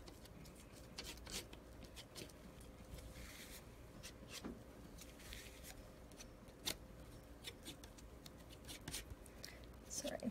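Oil paint being mixed on a palette: faint scattered clicks and taps of the mixing tool, with short scraping strokes about three and five seconds in.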